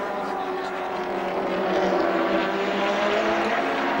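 Group A racing touring car engine running hard at speed, its note rising slowly as it pulls.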